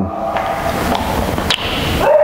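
Rustling and handling of a small plastic treat container, with a sharp click about one and a half seconds in.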